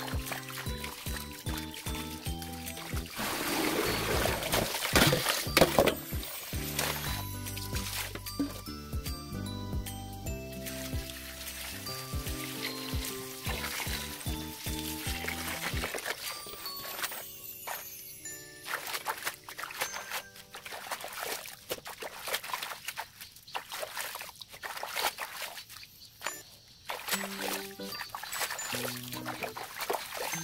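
Background music over water from a hose pouring into a stainless steel basin, splashing as hands swish young radish greens through it.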